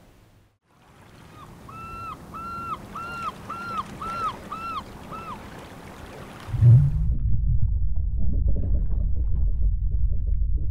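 Ocean sound effects for a logo intro: a wash of sea noise with a string of seven short rising-and-falling calls, then a deep rumble comes in about six and a half seconds in and holds.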